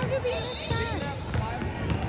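Basketball being dribbled on a hardwood gym floor, a series of bounces, with voices in the gym.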